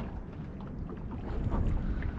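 Steady low rumble of wind on the microphone aboard a small boat at sea.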